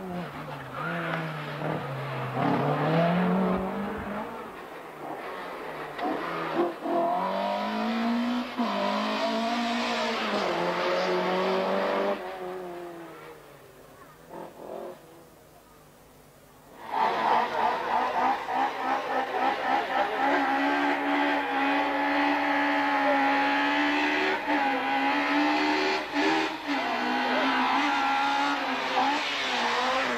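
Fiat Uno race car engine revving hard through a cone slalom, its pitch rising and falling again and again with gear changes and turns. Partway through, the engine noise drops away for about four seconds. Then a second car comes in, held at high, fairly steady revs.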